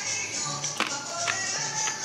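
Crunchy fried green plantain slice being bitten and chewed, a few sharp crunches at uneven intervals. Background music with Latin percussion plays underneath.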